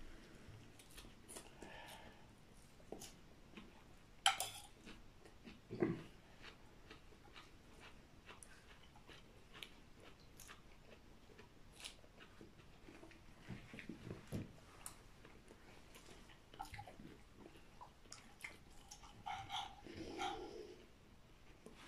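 Faint chewing and small clicks of fingers picking food off a plate as a person eats a meal of rice, chicken and raw vegetables by hand. There is a sharp click about four seconds in and a duller knock a second and a half later.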